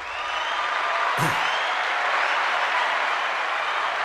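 Recorded crowd applause sound effect played from a podcast sound pad. It is a dense wash of clapping that swells in over the first half second and then holds steady.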